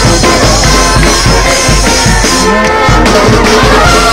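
Marching band playing loud: brass horns over drums.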